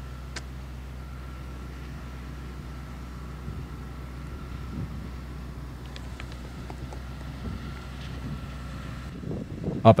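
Steady low rumble of wind on the microphone, with a faint steady hum beneath it and a small click about half a second in. A man's narrating voice starts at the very end.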